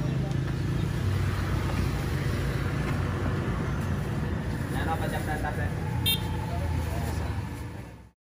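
Street traffic with a motor vehicle engine running steadily and faint voices in the background. The sound fades out at the very end.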